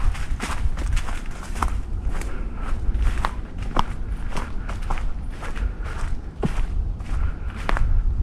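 Hiker's footsteps on a forest trail at a steady walking pace, about two to three steps a second, with a few sharper snaps among them and a continuous low rumble underneath.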